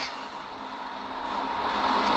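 A pause in speech filled with a steady hiss of background noise that slowly grows louder, with a faint low hum beneath it.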